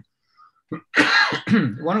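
A man clearing his throat once, a short rough burst about a second in after a stretch of dead silence, with speech following straight after.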